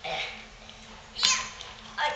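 A young child's short, high-pitched squeal, falling in pitch, a little over a second in.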